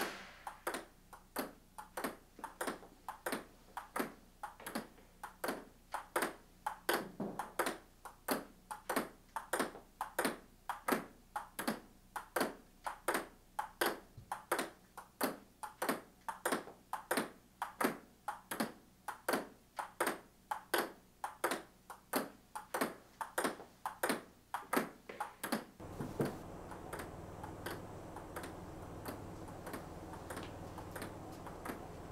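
Table tennis ball clicking in a steady rally, about two hits a second. About 26 seconds in the clicks become fainter under a low steady hum.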